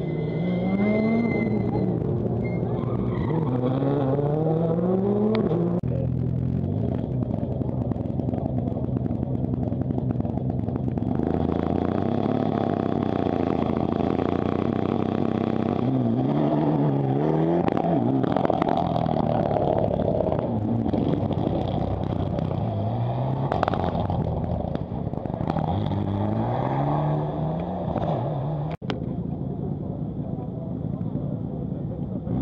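Rally car engines revving hard through the gears: the engine note climbs in repeated rising sweeps, each cut short by a gear change and starting again lower.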